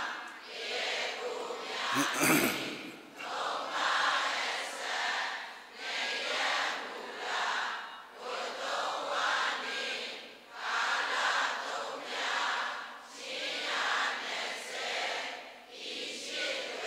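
A congregation of lay meditators chanting together in unison, the many voices rising and falling in regular swells about once every second and a half. A brief sharp knock about two seconds in.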